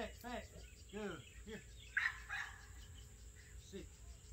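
A dog barking: a quick run of short barks in the first second and a half, then a single sharp, louder noise about two seconds in.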